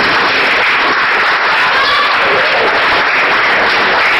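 An audience applauding steadily, heard on a worn VHS recording with dulled high end.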